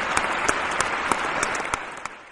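Recorded audience applause: a steady wash of many hand claps that begins to fade near the end.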